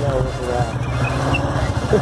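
A vehicle engine running steadily with a low rumble, under a voice briefly near the start and a short laugh at the end.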